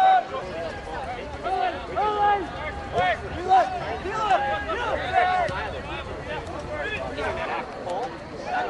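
Men shouting short, raised calls across an outdoor soccer field during play, several voices one after another, over a low steady rumble.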